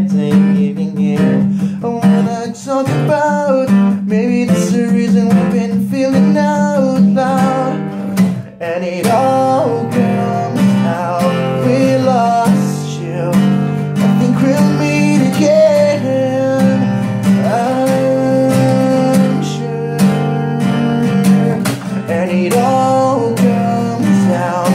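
Acoustic guitar strummed in chords, with a man singing over it.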